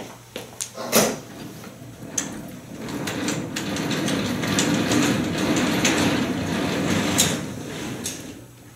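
Stage curtains being drawn open along their overhead track: a steady rolling, sliding noise lasting about five seconds. A few sharp knocks come before it.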